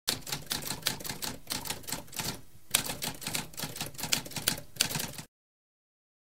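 Typewriter typing: a rapid run of key strikes with a brief pause about halfway through, stopping about five seconds in.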